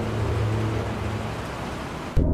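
A train's running noise dying away as it recedes: an even rushing noise over a low hum, slowly fading.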